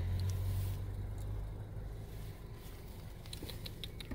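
Low, steady hum of a stopped car, heard from inside the cabin, fading after about a second into quieter background noise, with a few faint clicks near the end.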